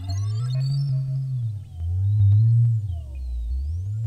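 Eurorack modular synthesizer patch through a Zlob Modular VnIcursal 666 VCA: a deep bass tone swoops up and down in pitch in slow arcs, about one every one and a half seconds, with faint higher gliding tones and scattered clicks above it.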